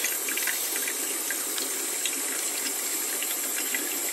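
Kitchen tap running steadily into a stainless steel sink, the stream of water splashing on the steel.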